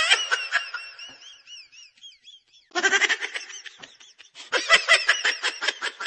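Laughter: a short burst about three seconds in, then a run of quick, pulsing laughs from about four and a half seconds on. Before that, a high wavering sound fades away over the first two seconds.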